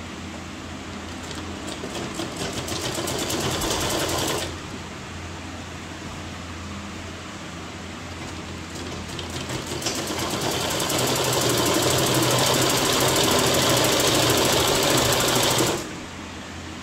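Sewing machine stitching fabric in two runs. The first speeds up over about four seconds and stops. After a pause, a longer run builds up, runs steadily, and stops abruptly at the end.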